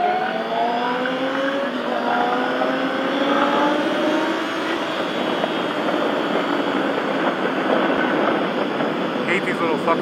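Motorcycle engine pulling steadily as the bike accelerates, its pitch rising slowly over the first few seconds, then holding under a steady rush of wind noise as it rides at speed.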